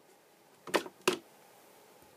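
Two short sharp clicks about a third of a second apart as the overhead room light is unplugged at the mains, then quiet room tone.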